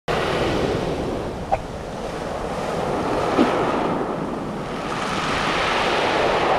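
Sea surf breaking and washing over a shingle beach of rounded pebbles, swelling and easing in a steady rush, with wind buffeting the microphone. Two brief, sharper sounds stand out, about a second and a half in and again about three and a half seconds in.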